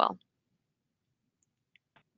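The last word of a woman's speech trails off, then near silence with two faint, brief clicks near the end.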